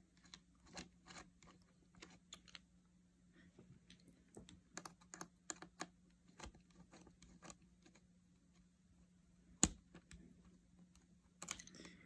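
Faint, irregular small clicks of a precision screwdriver turning a small metal screw into a MacBook Pro's logic board, with one sharper click a little before the end.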